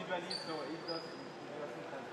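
Indistinct voices of people talking in a large room, with a thin, high, steady tone that lasts about a second shortly after the start.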